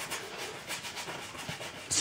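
Quiet scratchy rubbing of a one-inch bristle brush loaded with linseed oil, scrubbing back and forth over a dry canvas.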